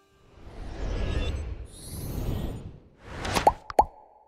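Animated end-screen sound effects: two whooshing swells one after the other, then a few quick pops near the end, each with a brief pitched ping.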